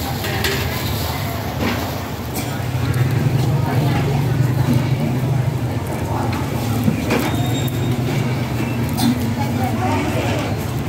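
Outdoor market background: people talking over a low, steady engine rumble that grows louder a couple of seconds in, with a few light clicks and handling noises.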